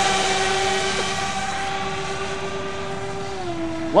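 Electric motors and propellers of a radio-controlled F-35 STOVL model plane in flight, a steady whine over a rush of air that drops slightly in pitch near the end.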